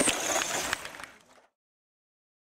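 A few sharp clicks and clatters over outdoor noise, from a radio-controlled monster truck knocking on a wooden ramp. The sound fades out about a second in, to silence.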